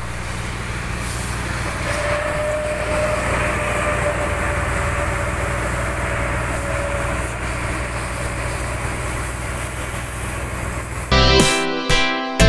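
A fire truck's engine running steadily, a low hum under a wash of noise, with a faint thin whine for a few seconds in the middle. Acoustic guitar music cuts back in near the end.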